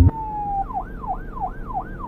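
Police car siren in a fast yelp: a tone slides down once, then sweeps up and down about three times a second.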